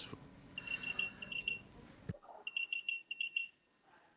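Two bursts of rapid high-pitched electronic beeps, each about a second long, from a phone or conferencing-system tone. The faint background hiss cuts out suddenly about two seconds in.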